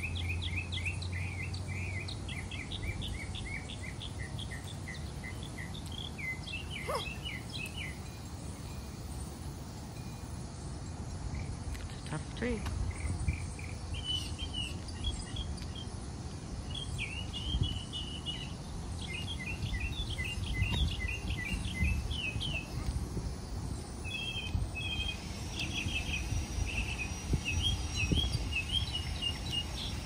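Small birds chirping and twittering in quick runs of short notes, with a few dull thuds of an axe biting into a tree trunk.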